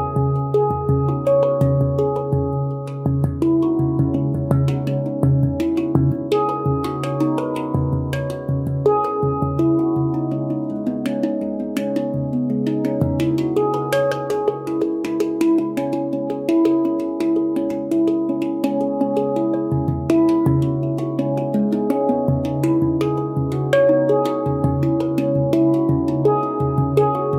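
Handpan played by hand: struck notes in a flowing, unbroken melody, each ringing on over a low sustained bass note.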